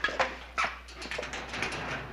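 A small dog whimpering and yipping, with a sharp knock just after the start.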